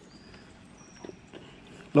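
Quiet outdoor background with two faint, brief high thin tones in the first half and a soft click about a second in.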